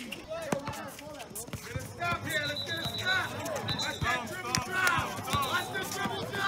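Basketball game sounds: the ball bouncing on a hard court with quick knocks, over a mix of indistinct voices from players and spectators. A high steady whistle-like tone sounds for about a second and a half from about two seconds in, and again briefly near the end.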